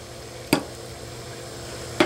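A plastic test-kit comparator set down on a wooden table with a single sharp click about half a second in. Under it, a steady low machine hum.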